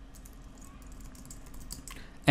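Quiet typing on a computer keyboard: a quick run of keystrokes.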